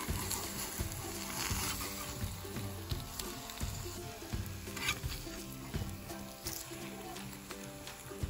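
Eggs sizzling as they fry in a pan. A slotted spatula scrapes and knocks against the pan a few times as it flips them. Soft background music plays underneath.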